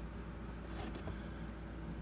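Faint steady electrical or room hum, with light rustling about a second in as a plastic action figure is handled and set down.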